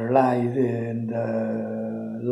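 A man chanting a mantra on one long held note, his voice staying at a single steady pitch.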